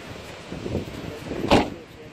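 A car door shutting once: a single solid thump about one and a half seconds in, over steady wind noise.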